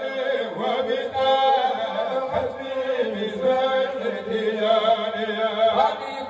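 Men chanting a Sufi zikr (dhikr) in a continuous melodic chant. The lead voice is sung into a microphone and amplified.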